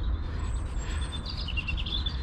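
Small birds chirping: a thin, high, slightly wavering call about half a second in, then short chirps near the end, over a steady low rumble.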